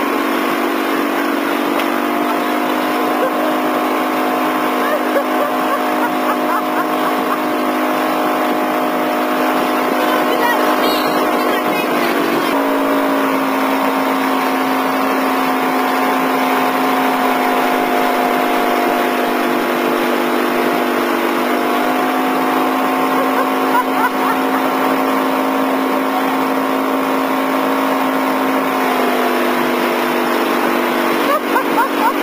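Motorboat engine running steadily at towing speed, over the rush of wake water and wind. Its pitch drops a little about twelve seconds in and rises again later.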